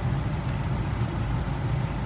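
Mahindra Scorpio-N's engine idling, a steady low hum heard from inside the closed cabin.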